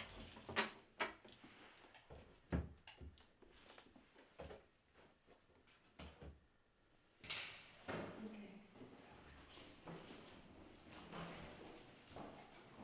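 Wooden doors in a small room being handled: a string of sharp clicks and knocks, the loudest about two and a half seconds in, then a door opening about seven seconds in, followed by rustling.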